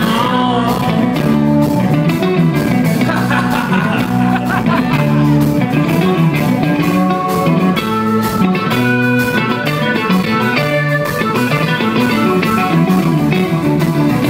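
Live band playing an instrumental passage: electric guitar lines with string bends over a repeating bass line and a steady drum beat.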